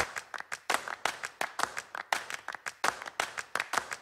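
Rapid run of sharp clap-like hits, about six a second, with no tune under them: a percussion break between stretches of intro music.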